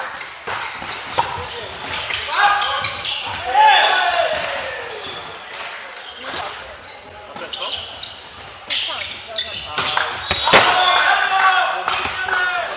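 Volleyball rally in an echoing sports hall: repeated sharp slaps of hands striking the ball, with players' shouted calls, loudest about 3 to 4 seconds in and again near the end.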